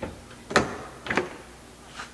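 A classic car's two-stage door latch releasing as the door is opened by its push-button handle, with three sharp metal clicks, the loudest about half a second in. The latch and striker are out of adjustment.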